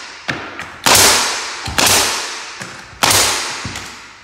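Nail gun driving nails into wooden door casing: three sharp shots about a second apart, with smaller clicks between, each shot followed by a fading hiss.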